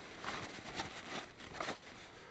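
A paper towel rustling as it is rubbed over the painted hull of a model tank, in about four short wiping strokes, to take off excess water after chipping.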